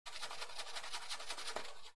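Kitchen roll paper rustling and scratching as a paintbrush is wiped on it: a fast, dense run of small crackles.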